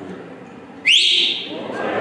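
One loud, sharp whistle from a person, sweeping quickly up in pitch about a second in and held briefly before fading.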